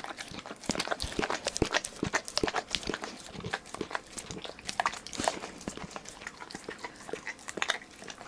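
Pit bull licking and smacking its mouth on sticky peanut butter close to the microphone: irregular wet clicks and smacks, several a second.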